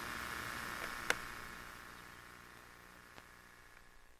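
Faint steady hiss and hum from a camcorder recording, with one sharp click about a second in, fading away to near silence by the middle.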